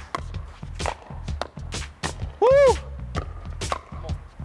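Pickleball paddles striking a hard plastic ball, with the ball bouncing on the court, in a quick rally: a string of sharp pops at uneven spacing. A person whoops once, about halfway through.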